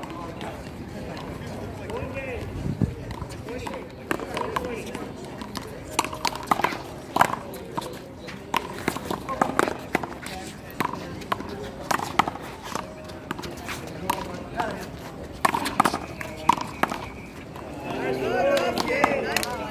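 A one-wall handball rally: the small rubber ball is struck by hand and slaps off the concrete wall and court in an irregular series of sharp cracks, starting a few seconds in and running until shortly before the end.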